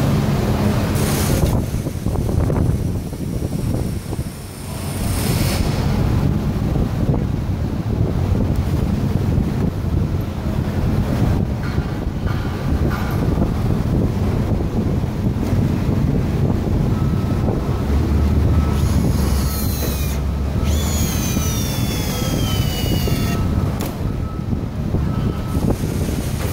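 Steady, noisy warehouse background rumble picked up on a moving hand-held phone. A stronger low hum swells briefly about two thirds of the way through, with a thin steady tone and a few faint falling whistles near the end.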